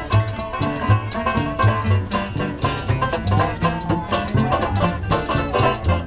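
Acoustic early-jazz band playing a lively tune: banjo and acoustic guitar strumming the rhythm, a washboard played in a steady beat, and upright bass notes underneath.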